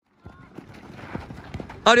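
Youth football players running and dribbling on a sand pitch: scuffing footfalls and a few soft thuds of feet on the ball. Near the end a loud shout calls out a name.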